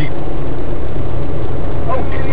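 Steady road and engine noise heard inside a car cruising at motorway speed, a constant low rumble.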